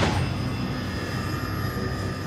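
Cinematic sound-design drone under a production logo: a steady low rumble with faint high sustained tones.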